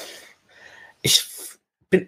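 A man speaking German hesitantly: the end of one word, a pause with a faint breath, then a single short word and the start of another.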